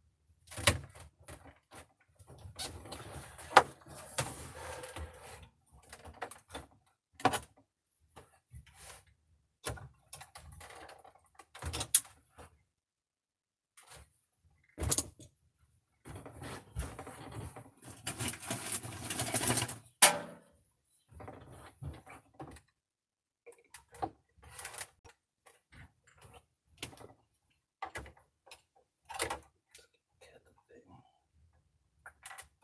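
Scattered clicks, knocks and clatter of hand tools and hard plastic parts being handled while a flat-screen TV's back housing is worked on. Two longer stretches of rattling and rustling, a few seconds in and again around eighteen to twenty seconds in.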